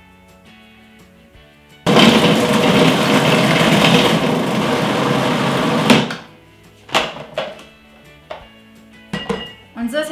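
Food processor running for about four seconds, whipping chilled full-fat coconut cream with a little coconut water into fluffy whipped coconut cream, then switched off. A couple of clicks follow about a second later.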